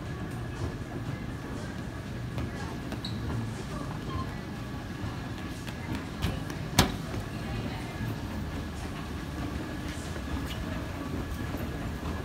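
Store escalator running with a steady low rumble, over general shop noise. A single sharp click about seven seconds in.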